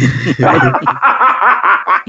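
Several men laughing together, with overlapping chuckles and laughter.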